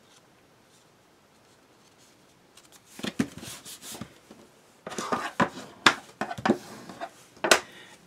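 Small black cardstock pieces, freshly taped together, being handled against a tabletop. The first couple of seconds are quiet. From about three seconds in comes an irregular run of paper rustles, scrapes and sharp taps, the loudest two near the end.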